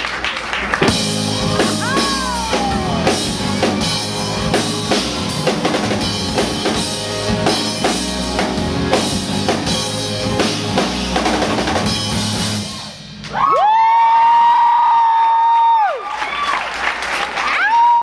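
Live rock band playing: drum kit, guitars and bass, with busy drum and cymbal strokes throughout. About 13 seconds in the band drops out and a single steady high note is held for about three seconds, and another begins right at the end.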